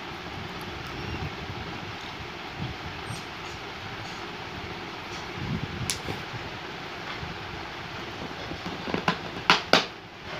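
A dog drinking from a small plastic water bottle held to its mouth, over a steady background hiss. A sharp click comes about six seconds in, and a quick run of louder clicks near the end.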